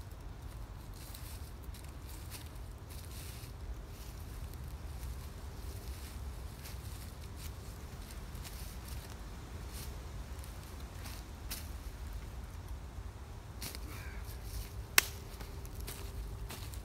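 Rustling and crunching of footsteps in dry fallen leaves while lashed wooden poles are lifted and stood up as a tripod, over a steady low wind rumble on the microphone. A single sharp knock comes about a second before the end.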